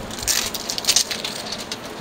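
Soft rustling and a few light clicks from a makeup brush kit being handled and opened.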